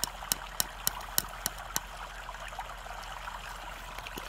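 Steady white noise playing in the background. A quick run of about seven sharp clicks, about three a second, stops a little under two seconds in.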